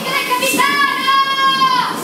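A high wordless voice holding one long note. The note slides up about half a second in, holds, then drops away near the end, with a short breathy hiss just before it.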